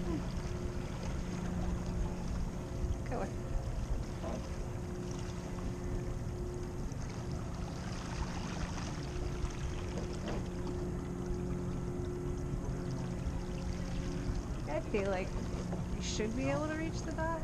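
Rowing shell gliding with its oars at rest: steady low wind and water noise on the microphone with a faint, steady low hum throughout, and faint voices near the end.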